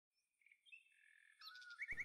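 Faint songbird chirping: a few thin whistled notes, ending in a quick trill.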